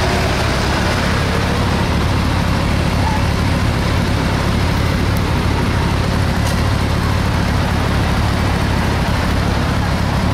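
Honda CBR1100XX Super Blackbird's inline-four engine idling steadily.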